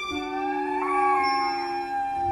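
A chorus of wolves howling together: several long, overlapping howls held at different pitches, one gliding up partway through.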